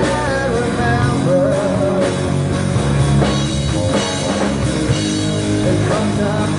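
Live rock band playing a song: drum kit, electric guitars and bass, with a singer's vocals over the band in the first second or so and again near the end.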